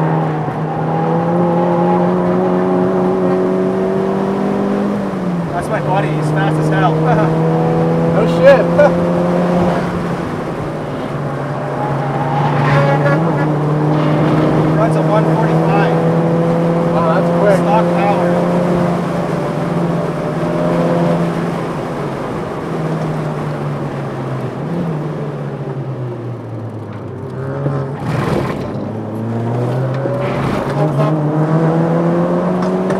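Turbocharged four-cylinder engine of a tuned 2007 VW MK5 GTI, heard from inside the cabin while lapping a race track under hard acceleration. The engine note climbs, drops sharply at an upshift about five seconds in and climbs again, then falls away steadily near the end as the car slows.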